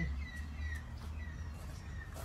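A bird chirping faintly in the background, a string of short falling notes, over a steady low rumble.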